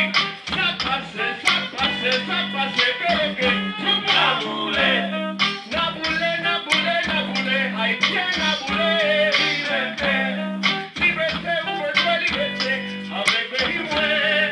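Live band music with a steady beat: guitar, saxophone and keyboard behind a male vocal sung into a microphone.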